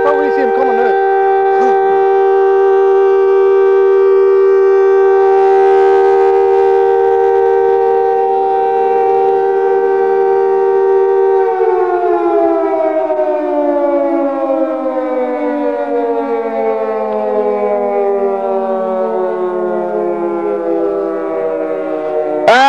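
Air-raid siren sounding a steady chord of several tones for about half the time, then winding down, its pitch falling slowly through the rest.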